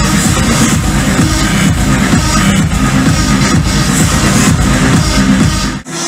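Electronic dance music drop played loud over a club sound system, with a heavy pounding bass line. It cuts out for an instant near the end, an edit into the next section.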